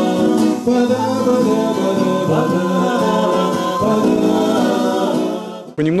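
Bard song sung by two men and a woman in harmony to two strummed acoustic guitars. The music cuts off abruptly near the end and a man starts speaking.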